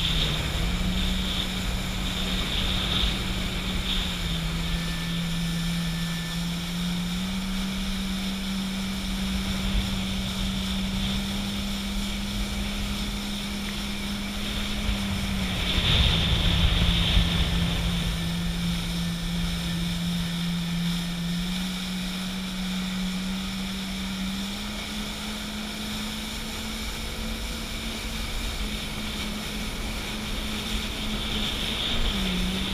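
Jet ski engine running under way, its tone holding steady and stepping up and down a few times as the throttle changes, over rushing water and wind on the microphone. A louder surge of spray and wind about halfway through.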